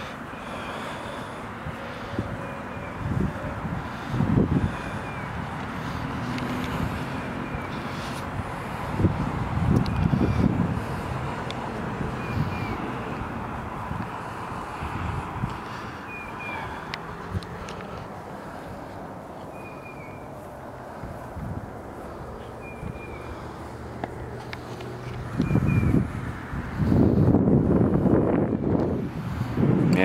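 Outdoor background noise with short bird calls every few seconds. Irregular low rumbling bumps come and go and grow louder near the end.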